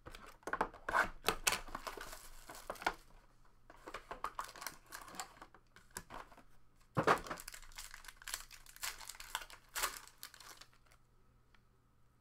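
A cardboard trading-card box handled and opened, then a foil card pack torn open and crinkled. The noise comes in bursts of crackling, with a sharper knock about seven seconds in.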